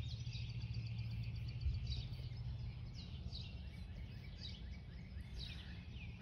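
Songbirds chirping, short high chirps in scattered clusters throughout, over a steady low background hum.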